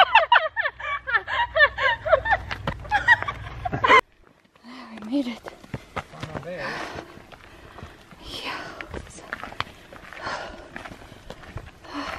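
Quick, high chattering voices for the first few seconds. Then, after a sudden cut, footsteps on a dirt and gravel trail with heavy breathing swelling every couple of seconds.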